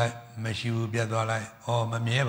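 A Buddhist monk's voice chanting on a mostly level, held pitch, with a short break about one and a half seconds in.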